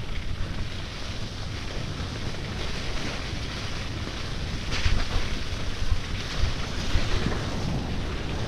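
Wind rushing over the microphone as a mountain bike rolls down a slushy, snowy dirt track, with a steady tyre rumble. A brief louder rattle comes about five seconds in.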